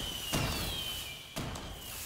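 Fireworks sound effect: a thin descending whistle with two sharp bangs about a second apart, fading away.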